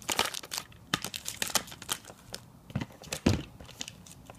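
Hard plastic trading-card cases clicking and clacking against each other as a hand sorts through them in a cardboard box: a run of irregular sharp clicks, busiest in the first second and a half, then sparser, with one louder knock a little past three seconds in.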